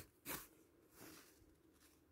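Near silence, with a brief soft rustle about a quarter second in and a fainter one about a second in: wool yarn and needle being drawn through fabric during hand embroidery.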